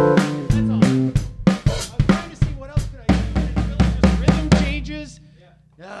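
Live band playing a quick, poppy 50s Motown-style beat: drum kit with snare and kick, keyboard and a singing voice. The music winds down and stops about five seconds in.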